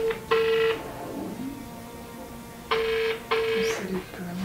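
Telephone ringback tone of an outgoing call that is ringing but not yet answered: a steady double beep, heard twice, about three seconds apart.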